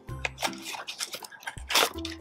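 Tissue-paper wrapping crinkling and rustling as it is pulled from a cardboard box, with one louder crinkle near the end. Soft background music plays under it.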